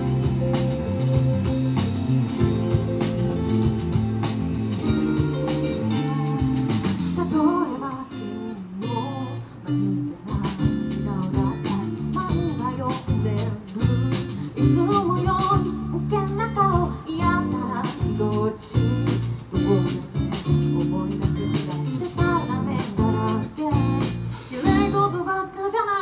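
Live band playing a cover of a Japanese pop-rock song through a PA: drums, bass and electric guitar, with cymbals for about the first seven seconds, then a sparser passage with singing over guitar and bass.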